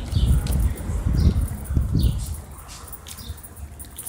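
Outdoor ambience with short bird chirps. During the first two seconds there is a low buffeting rumble on the phone's microphone, which then eases off.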